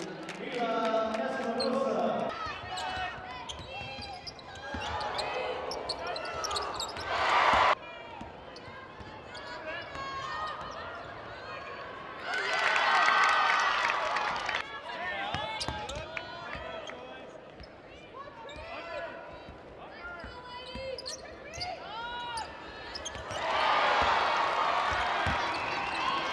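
A basketball dribbled on a hardwood court in a large arena, short bounces under voices. The voices grow louder twice, near the middle and near the end.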